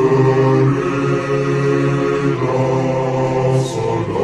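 Choir of male voices singing a French military promotion song, slowed down and heavy with reverb. The voices come in together right at the start after a brief pause, hold long notes and move to new notes a little past halfway.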